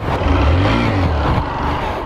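Honda CG 125 Fan's single-cylinder four-stroke engine revved hard for a wheelie attempt. Its pitch climbs to a peak about a second in, then drops back.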